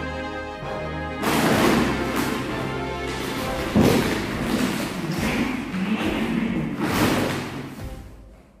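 Background music throughout. From about a second in, a loud crackling rustle of a thin plastic bag sits over it as a cat pushes into the bag, with a sharp thump a little before the middle.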